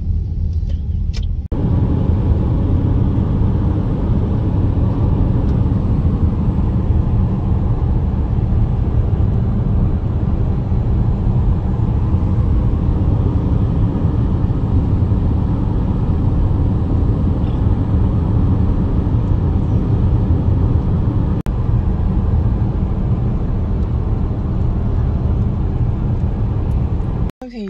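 Steady road rumble of a car driving at speed, heard from inside the car, with a deep low rumble; it jumps suddenly louder about a second and a half in and then holds even.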